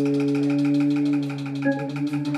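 Electric guitar holding one long sustained note over the band in a live blues performance, with light even cymbal ticks behind it; near the end the guitar moves on to new notes.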